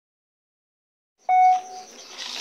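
Dead silence at a cut in the recording, then about a second and a quarter in a loud, steady beep-like tone held for about half a second.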